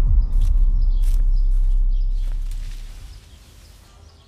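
A loud, deep low rumble that holds for about two seconds and then fades away, with a few faint short high ticks over it.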